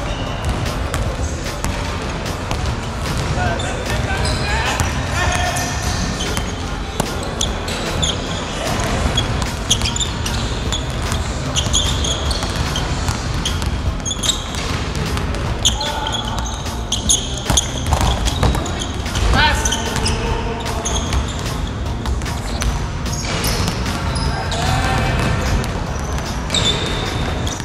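Basketball being dribbled on a hardwood gym floor, repeated bounces through a one-on-one game, with sneakers squeaking on the court now and then.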